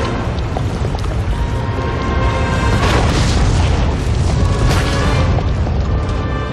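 Film soundtrack: dramatic music over deep booming and rumbling effects of a spaghetti tornado forming, with swells of rushing noise about three seconds in and again near five seconds.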